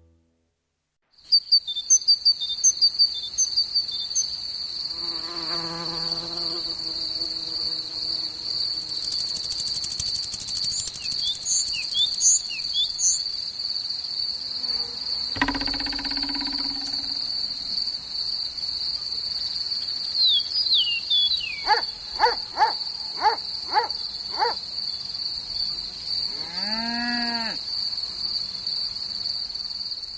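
Steady high-pitched cricket trill that starts about a second in and holds, with short chirps and other insect calls scattered over it, including a quick run of sharp clicks late on.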